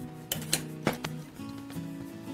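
Background music with steady notes, with three short clicks in the first second from parts being handled.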